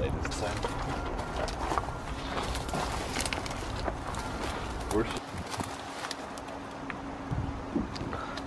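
Crinkling and rustling of a large vinyl decal sheet and its transfer tape being peeled and pressed onto a trailer's side, with scattered small crackles. A low rumble underneath drops away about five seconds in.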